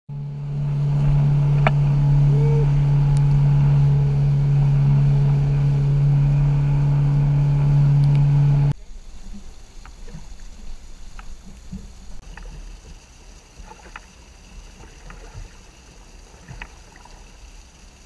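A boat motor running loud and steady at one pitch, cut off abruptly about nine seconds in; after it, much quieter wind and water noise with light knocks and clicks on a small open boat.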